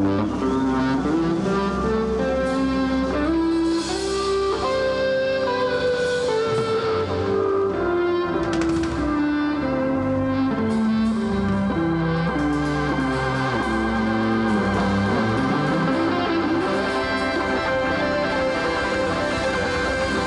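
Live southern rock band playing an instrumental passage: electric guitars carry a melody of held notes that steps downward and back up over a steady, full band.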